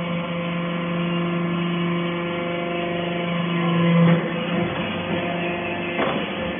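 Hydraulic briquetting press for metal chips running with a steady, even hum. The hum swells about four seconds in, then drops off suddenly.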